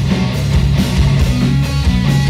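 A live band playing loudly, with electric guitars over strong sustained bass notes and a steady beat.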